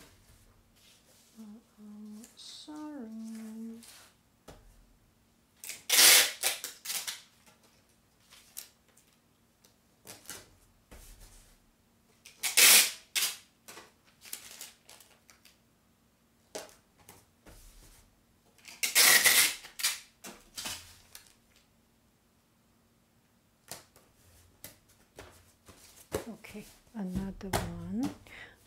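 Adhesive tape pulled off its roll in three loud ripping pulls several seconds apart, with smaller crackles and rustles between.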